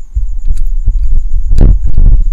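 Microphone handling noise: loud low rumbling with a few knocks, the loudest about a second and a half in, as the computer's microphone is bumped and rubbed by clothing close up.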